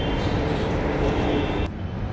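Metro train running, a steady mechanical hum with a few held tones over a rushing noise, broken off abruptly near the end.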